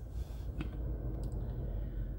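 Low steady rumble inside a car's cabin, with two faint clicks, one about half a second in and one just past a second.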